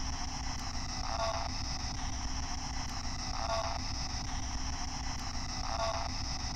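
Spirit box radio static hissing steadily, with a short voice-like burst repeated three times, about two and a half seconds apart. The uploader hears the burst as a female voice saying "go".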